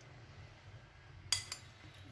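Metal spoon clinking against a ceramic plate: two light clinks in quick succession, about a second and a half in.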